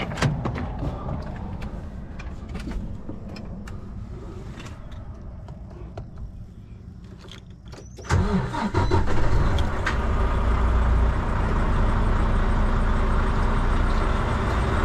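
Knocks and clicks of climbing into the truck cab, then about eight seconds in the Volvo VNL 760's heavy diesel engine is started and settles into a steady idle, heard from the driver's seat.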